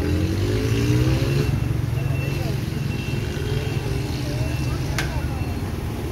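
Busy street traffic: a steady low engine rumble, with one engine revving up, its pitch rising, over the first second and a half, and crowd voices in the background. A sharp click near the end.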